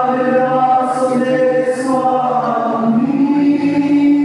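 A choir singing a slow hymn in long held notes, with a lower part coming in about three seconds in.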